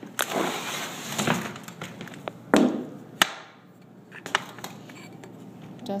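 A door being worked and pushed shut, giving sharp knocks and latch clicks, the loudest about two and a half seconds in, with a rustling noise before them. The latch is not catching properly.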